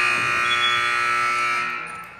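Gym scoreboard buzzer sounding one long, loud, steady tone that dies away near the end.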